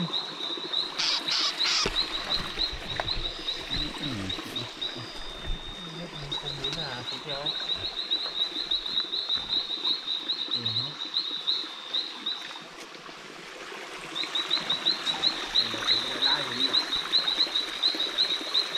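A small animal's night call: a rapid, even train of high-pitched chirps, several a second, breaking off for a second or so about two-thirds through and then starting again.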